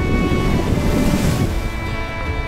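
Ocean surf washing on a beach with wind buffeting the microphone; a wave's hiss swells about a second in and fades. Background music with sustained notes plays throughout.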